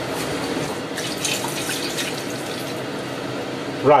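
Water running steadily, topping up the water for the stew.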